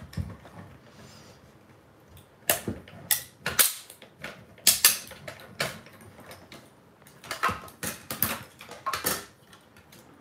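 Small hand-cranked die-cutting machine running a plate sandwich through: a string of irregular sharp clicks and knocks from the crank and the plates as the die cuts the cardstock.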